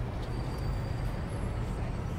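A steady low rumble of engine noise with a noisy hiss above it, with no music.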